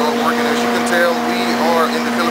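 A man speaking over a steady mechanical hum that holds one low pitch with a few overtones.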